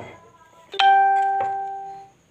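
A short knock at the start, then a clear bell-like metallic ding about three-quarters of a second in, struck again about half a second later, ringing out and fading.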